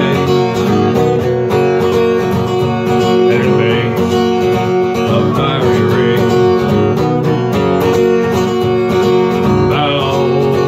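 Acoustic guitar strummed steadily, with a harmonica in a neck rack playing a melody line over the chords.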